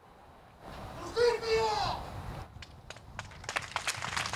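A single voice in the crowd shouting out one long cry that falls in pitch, a call for justice that breaks a silence. Scattered claps follow, building into applause near the end.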